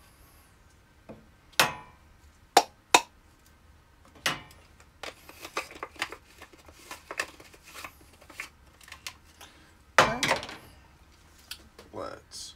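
Hario Mini Slim hand coffee grinder being handled as the ground coffee is tipped and knocked out into the paper filter: a few sharp knocks, then a run of lighter ticks and rattles, and a loud clatter about ten seconds in.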